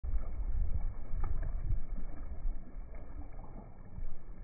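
Wind rumbling on the microphone over sea water washing against rocks, loudest in the first two seconds or so and easing after.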